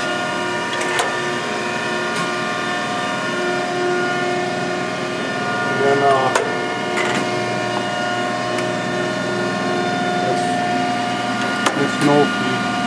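Mattison surface grinder running: a steady machine hum made of several held tones, with a few sharp clicks.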